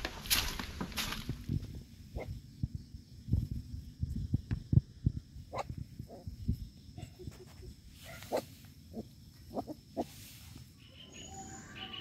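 Young puppies making short whimpers and squeaks, among scattered knocks and rustles.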